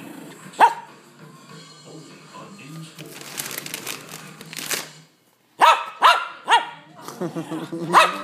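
Small dog barking: one sharp bark about half a second in, then three quick barks about six seconds in and more barking near the end.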